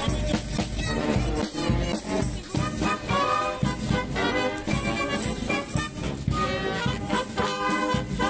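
Marching brass band playing live, with trumpets and a sousaphone over a regular drum beat.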